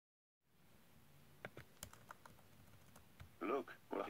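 A few scattered, faint keystrokes on a computer keyboard, then near the end a synthesized text-to-speech voice starts talking.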